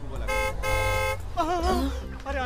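A vehicle horn honks twice, a short toot and then a longer one, followed by a man's startled cry.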